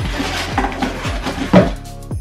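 Artificial Christmas tree parts rustling and clattering in a cardboard box as they are pulled out, with one loud knock about one and a half seconds in, over background music with a steady beat.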